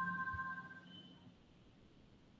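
Google Meet notification chime as the call recording starts: two steady tones ringing out and fading over about a second, with a brief higher tone about a second in.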